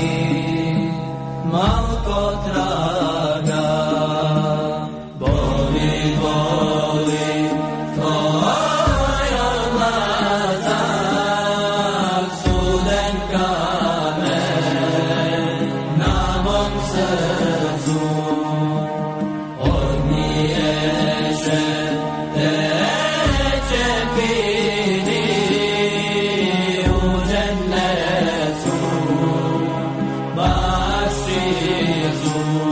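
Slow, ornamented religious chanting, the melody gliding and winding over a low sustained drone that swells again every few seconds.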